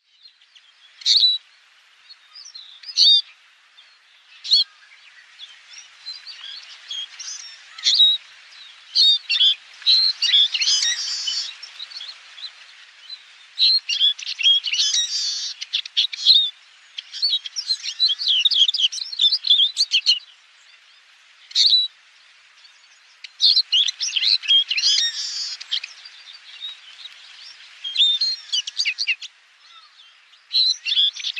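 Eurasian siskins singing: rapid, high twittering phrases mixed with sharp chirps, coming in bursts of several seconds separated by short pauses.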